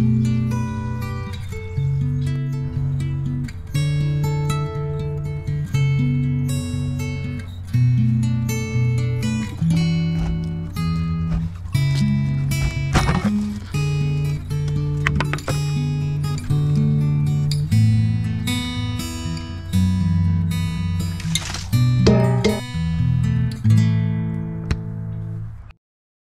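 Background music: strummed acoustic guitar with a steady bass, ending abruptly near the end.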